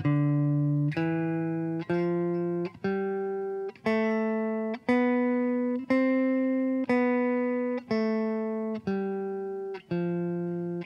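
Clean electric guitar, a Fender Telecaster, playing a C major scale note by note, all fretted with no open strings, at about one note a second. Each note rings until the next; the scale climbs to the high C about seven seconds in, then comes back down.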